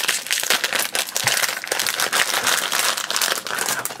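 Foil blind-bag packet crinkling and crackling as hands work it open and pull out the keyring figure, a dense run of irregular crackles.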